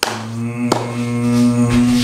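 A low, steady droning tone held on one pitch for about two seconds, starting abruptly and cutting off near the end.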